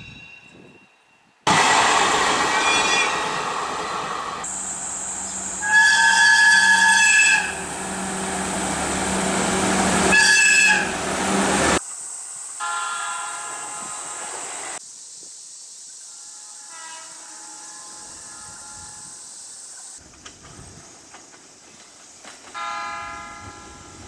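A run of train horn blasts from different trains, edited one after another. First an electric locomotive sounds its horn three times over loud train running noise. After a sudden cut near the middle come shorter, fainter horn blasts from red Keikyu commuter trains.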